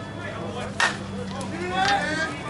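Slowpitch softball bat striking the ball: one sharp crack with a brief ring about a second in, followed near the end by a voice shouting.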